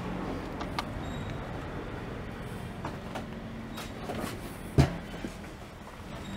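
Steady low street hum with a few light knocks, and one sharp thump almost five seconds in as someone climbs into a small tiny-home cabin.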